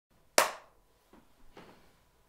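A single sharp hand clap about a third of a second in, with a short room echo after it, used as a sync clap before the take.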